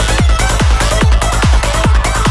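Full-on psytrance: a kick drum on every beat at about 140 beats a minute, each kick dropping in pitch, with a rolling bassline pulsing between the kicks and hi-hats and synth lines above.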